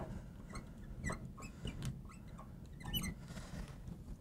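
Felt-tip marker squeaking faintly on a glass writing board: a run of short, high squeaks and light ticks as words are written stroke by stroke.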